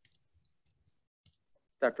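Near silence with a few faint, scattered clicks, then a man's voice starts speaking near the end.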